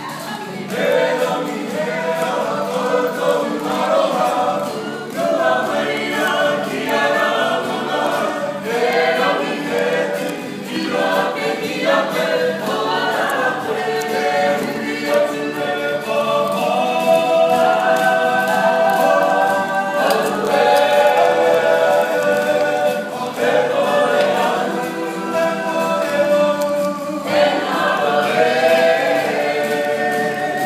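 A Māori kapa haka group singing a poi song together in chorus, accompanied by guitar, with short breaks between phrases.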